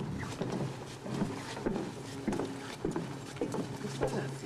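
Footsteps on a wooden boardwalk, a knock about every half second or so, over a steady low hum.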